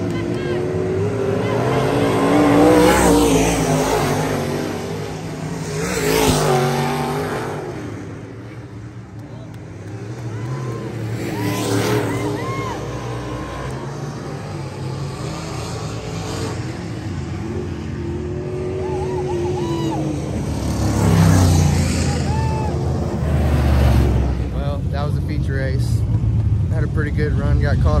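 Dirt modified race cars racing around a dirt oval, their engines rising and falling in pitch as cars pass by one after another, with the loudest passes a few seconds in and again about twenty-one seconds in.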